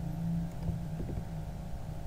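Steady low background hum of the recording, with two faint clicks about halfway through.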